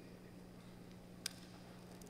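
Near silence in a quiet room with a steady low electrical hum, broken once by a single short click a little over a second in.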